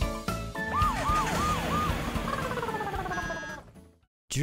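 A novelty siren sound effect at the close of a children's song: a few music notes, then four quick siren-like wails and a falling slide that fades out near the end.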